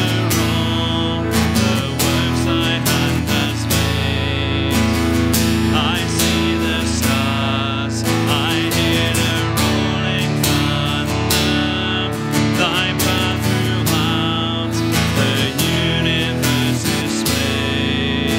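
Acoustic guitar strummed as the accompaniment to a slow hymn, with voices singing along.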